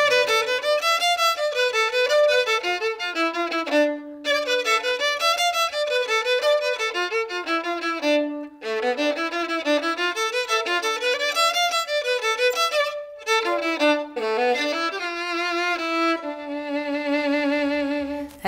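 Solo violin played with a bow: a lively melody of short, quickly changing notes with a few brief pauses, ending on a long held note with vibrato.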